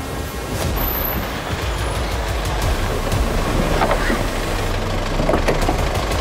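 A Chevrolet SUV's engine running with a steady low rumble as it drives in and pulls up.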